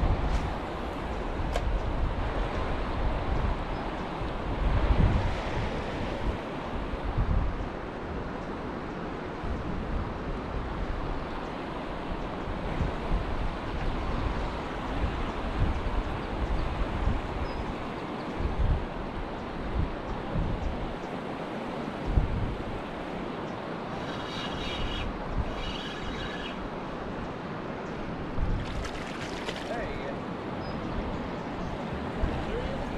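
Wind gusting on the microphone in low rumbles over a steady rush of river water.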